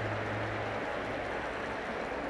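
Steady background noise of a large hall, with a low hum for about the first second and no speech.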